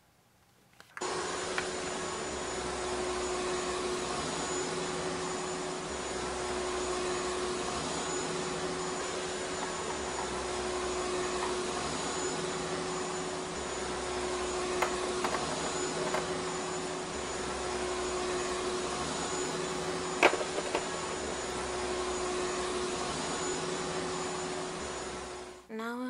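Vacuum cleaner running steadily with a constant hum. It switches on about a second in and cuts off just before the end, with a slow pulsing underneath and a single sharp click about twenty seconds in.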